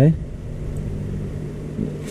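A steady low mechanical hum, like a fan or motor running in a small room, under the faint rustle of notebook pages being turned by a gloved hand.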